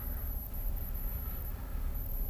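Low, steady rumble of background noise on the microphone, with no speech.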